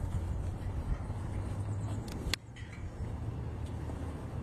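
VW Brasília's rear-mounted air-cooled flat-four engine idling with a steady low rumble. A single sharp click a little past halfway.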